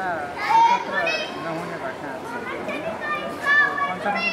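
Children shouting and calling out at play, several high voices rising and falling in pitch, over a man talking.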